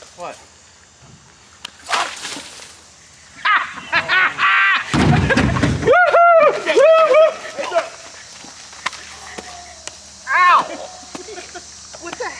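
People yelling and shrieking in excitement during a chalk-ball ambush, in loud high-pitched bursts about six seconds in and again near ten seconds. Just before the first yells comes a loud burst of noise with a deep thump in it.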